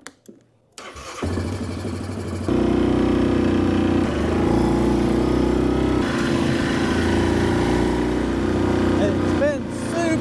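ATV (four-wheeler) engine started with the key: it catches about a second in and idles, then runs louder and steady from about two and a half seconds as the quad drives off along a dirt track.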